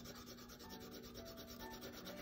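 Faint scratching of a colored pencil rubbed back and forth on paper as brown is shaded in, with a faint steady hum beneath.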